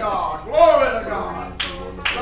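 A man's voice through a microphone making two drawn-out, wordless exclamations that swoop up and down in pitch, with one sharp clap near the end.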